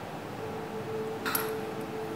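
Quiet room with a faint steady hum and one short click a little over a second in.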